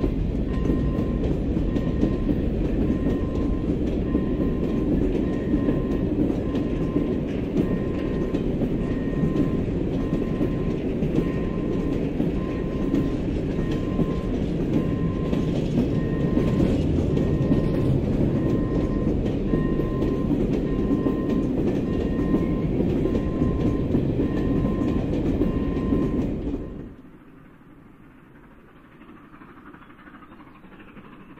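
Freight wagons rolling past at steady speed, with a continuous rumble of wheels on rail and a faint high tone pulsing about once a second. The rolling cuts off suddenly near the end, leaving quiet outdoor background.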